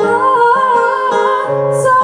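Live acoustic pop song: a woman singing a long, wavering held note over two acoustic guitars.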